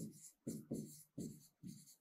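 Stylus writing on an interactive whiteboard screen: about five short, faint pen strokes in quick succession.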